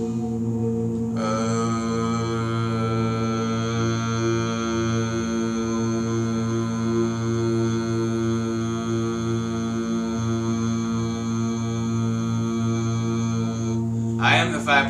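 A man's voice chanting one long, steady "uh" vowel, the vowel sound toned for the root chakra, starting about a second in and held until near the end. Underneath runs meditation music with a steady low drone.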